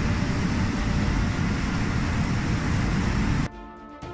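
River rapids rushing through a rocky canyon, a loud, steady wash of water noise, cut off suddenly about three and a half seconds in by music.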